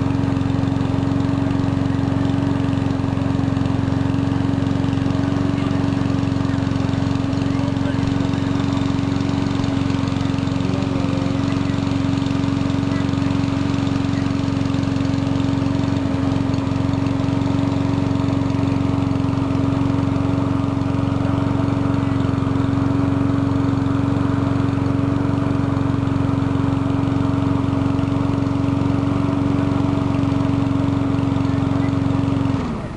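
A steady motor drone with a strong constant hum, unchanging in pitch and loudness throughout.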